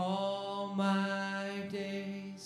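A man singing a slow worship song in long held notes, with acoustic guitar.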